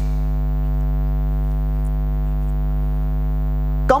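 Steady electrical mains hum in the recording: a constant buzz with many evenly spaced overtones and no change in pitch or level.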